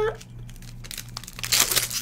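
A trading-card pack's foil wrapper being handled and ripped open: a dense run of crackles starts about a second and a half in.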